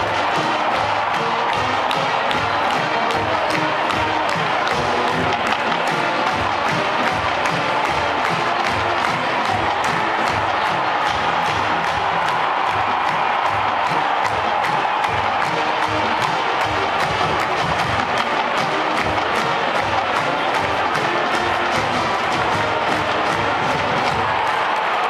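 College marching band playing a march in a stadium: brass over a steady drum beat, with the crowd cheering underneath.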